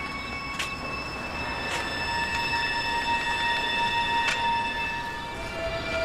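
Suspense underscore music: several high, thin tones are held and shift pitch slowly, one stepping lower near the end, over a faint hiss with a few soft clicks.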